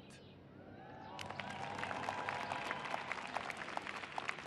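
Crowd applause that starts about a second in and builds into steady clapping, a response to a line in a speech.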